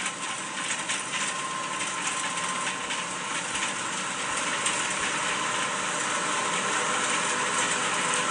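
A steady, noisy drone with a faint high tone running through it, slowly growing louder, played through a television's speaker.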